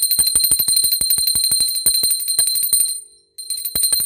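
A small hand bell of the kind rung during a Hindu puja, shaken rapidly and continuously. It gives a high, steady ringing tone with quick strikes about ten times a second, pausing briefly about three seconds in before ringing on.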